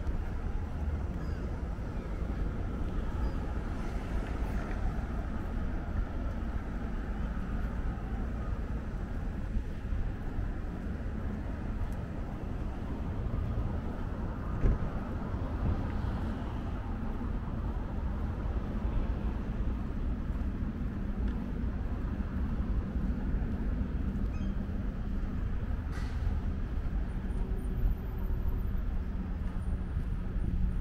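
Outdoor street ambience: a steady low rumble of wind on the microphone mixed with distant road traffic, with one brief thump about fifteen seconds in.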